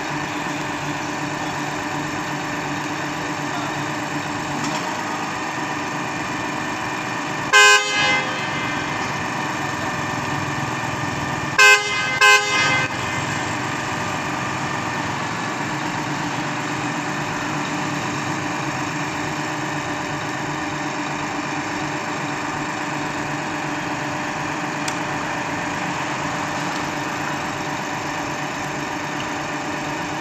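Truck-mounted concrete boom pump's engine and hydraulics running steadily as the boom unfolds. A vehicle horn sounds once about eight seconds in and twice in quick succession about four seconds later.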